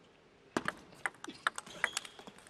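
Table tennis rally: the celluloid ball clicks sharply off the rackets and the table, about seven strikes coming quickly one after another from about half a second in.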